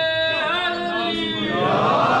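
A man singing an unaccompanied naat, Urdu devotional verse, in a chanting style: a long held note breaks into a wavering phrase about half a second in, and the singing grows louder and fuller near the end.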